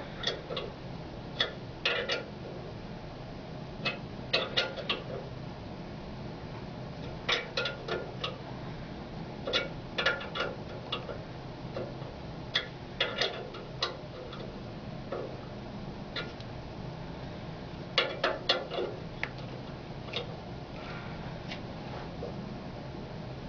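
A wrench tightening an ultrasonic transducer into its metal holder: small clicks in short, irregular clusters of two to four, with pauses between them.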